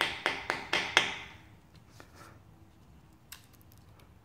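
Light hammer taps on masking tape laid over the edge of a cast-iron small-block Chevy engine block, cutting the tape to a clean line along the edge. The taps come about four a second and stop after about a second, with one faint tap later.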